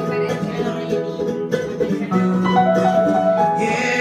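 Live acoustic folk music: an instrumental break of acoustic guitar with keyboard accompaniment, held notes under a moving melody line.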